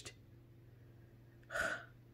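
A woman's short, sharp intake of breath about one and a half seconds in, after a quiet pause, with a faint steady hum underneath.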